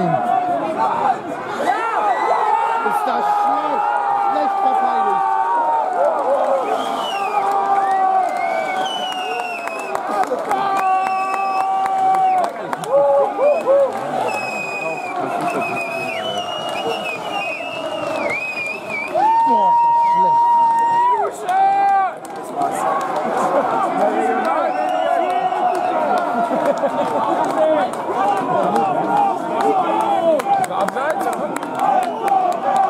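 Spectators at a football match shouting and cheering over a goal, many voices overlapping, with one long held shout a little past the middle.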